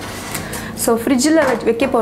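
Speech: a woman talking, starting about a second in after a short pause.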